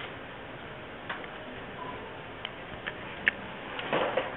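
A handful of short, sharp clicks at irregular intervals, the loudest a little over three seconds in, over a steady background hiss.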